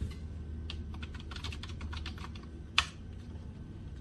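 Typing on a computer keyboard: a quick run of key clicks, then one louder single keystroke a little before three seconds in.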